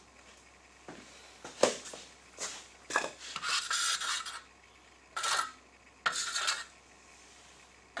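Wide metal spreading knife scraping and clicking as it works casting epoxy in a river-table mold: a string of short scrapes, with a longer scrape a little past three seconds in.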